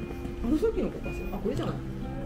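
Background music with steady held notes, with a few short sliding voice-like sounds over it about half a second and a second and a half in.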